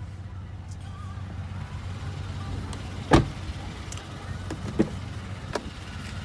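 Pickup truck's engine idling with a steady low hum, with a sharp knock about three seconds in and a few lighter clicks near the end as the truck's doors are shut and opened.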